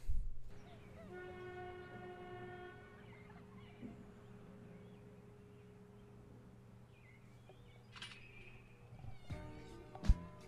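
Faint opening of a music video's soundtrack. A brief horn-like tone sounds about a second in and lasts under two seconds, over a low steady hum. A short high chirp comes near eight seconds, and music starts just before the end.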